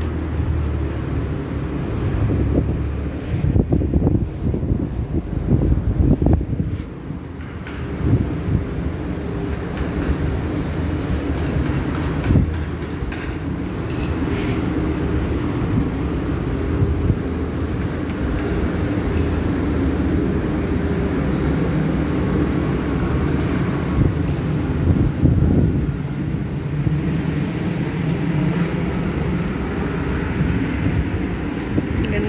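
Steady low rumble of city traffic, louder and more uneven in the first several seconds, with a brief dip about seven seconds in.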